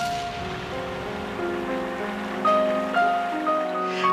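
Background music of slow, held notes that step from one pitch to another, over a faint steady rushing noise.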